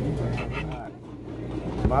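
Restaurant dining-room background: other people's voices over a low steady hum, dipping quieter about a second in, before a man starts speaking near the end.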